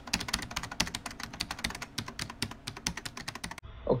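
Typing sound effect: rapid computer-keyboard key clicks, laid over question text typing itself out on screen, stopping suddenly shortly before the end.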